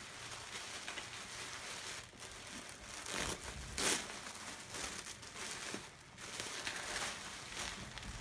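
Tissue paper crinkling and rustling as a wrapped package is unwrapped by hand, with a few sharper crackles about three and four seconds in.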